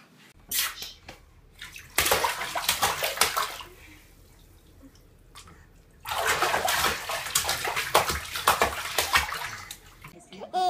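Babies splashing and slapping bath water in a bathtub, in two bouts of quick splashes with a quieter lull between them.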